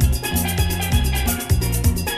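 Steel band music: steel pans over a drum kit and bass with a fast, even beat and quick cymbal strokes.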